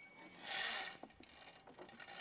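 A climber in a harness on a ropes-course Tarzan swing reaching a rope cargo net: a faint, brief rushing scrape lasting about half a second, then a single faint click of harness hardware.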